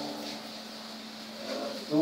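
A pause in a man's voice coming through a PA system, leaving a steady faint hum and a high steady buzz; his voice starts again near the end.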